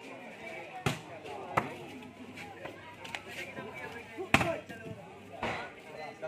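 A volleyball being hit during a rally: four sharp smacks spread over a few seconds, the loudest about four seconds in. Spectators' voices carry on underneath.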